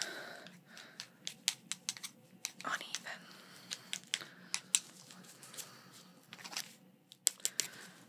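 Close-miked handling sounds of nitrile-gloved hands and a marking pencil: sharp, irregular clicks and crinkles, clustered near the end, with a faint steady hum underneath.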